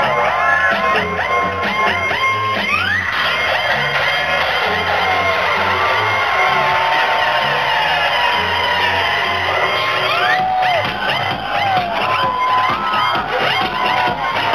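Loud electronic dance music from a DJ set played over a club sound system, with a steady beat. A rising build-up sweeps upward from about three seconds in, and the beat drops back in about ten seconds in.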